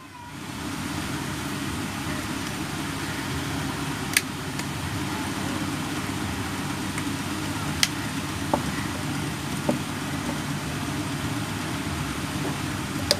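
Sharp plastic clicks, four or so spaced a few seconds apart, as an opening tool is worked around the seam of a Samsung keypad phone's housing to release its clips. A steady low background hum runs underneath.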